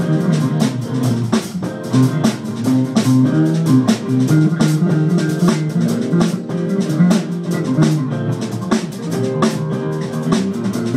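Live amplified rock instrumental: electric guitar played through an amp over a drum kit keeping a steady beat with cymbals.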